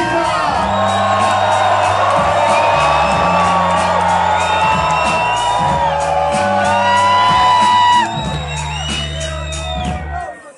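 Live rap concert: a loud bass-heavy beat through the PA with the crowd shouting and whooping over it. The bass cuts out for a moment about eight seconds in.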